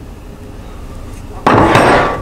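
A plate clattering down onto a stone countertop near the end, one sudden loud knock that rings briefly, after a low steady hum of the room.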